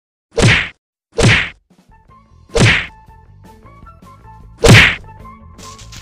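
Four loud, sharp whack-like hit sound effects, the last one loudest, with a music track entering quietly under them about two seconds in.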